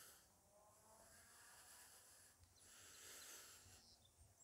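Near silence, with a faint breath about three seconds in.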